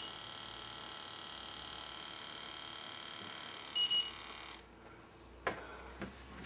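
Electronic termite detector giving a short high beep right after being switched back to medium sensitivity, and a second beep about four seconds later. A faint steady high whine underneath cuts out just after the second beep, and a light click of handling comes near the end.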